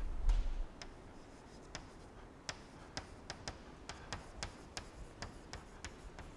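Chalk tapping and scraping on a blackboard as it is written with: irregular sharp clicks, a few a second. A low thud comes right at the start.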